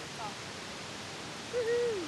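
A short hoot-like vocal call near the end, held briefly and then sliding down in pitch, over a steady hiss.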